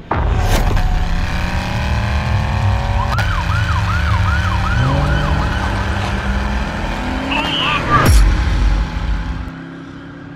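Police siren wailing with rising sweeps, then switching to a fast yelp of about two swoops a second, over a steady low rumble. A sharp hit comes about eight seconds in, after which the sound fades.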